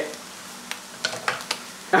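French-fry potatoes frying in hot oil in a pan at their first blanch: a steady sizzle with a few sharp crackles or clicks in the second half.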